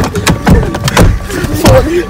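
Handling noise and three loud, dull thumps about half a second apart as people scramble into a car and the phone is knocked about, with short breathless voice sounds between them.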